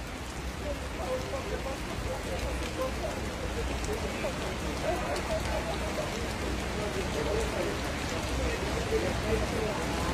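Steady rain falling on wet paving and a pond, a continuous even hiss.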